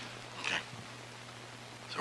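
A short pause in speech: quiet room tone with a faint steady hum and hiss, and one brief soft sound about half a second in.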